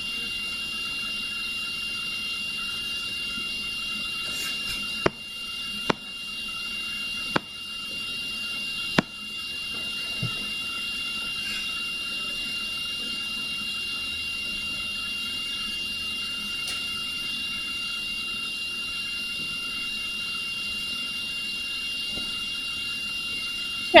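Steady electronic hiss with a faint constant high-pitched whine, the recording's background noise, broken by four sharp clicks between about five and nine seconds in.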